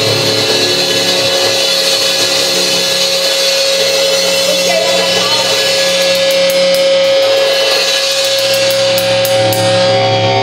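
Heavy metal band playing loudly: distorted electric guitar holding long sustained notes over a drum kit. A run of quick, evenly spaced drum or cymbal strokes comes in over the second half.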